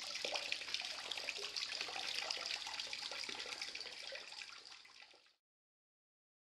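Water trickling and splashing down a KoraFlex chimney flashing and roof tiles into the back gutter, a steady running sound that fades away just over five seconds in.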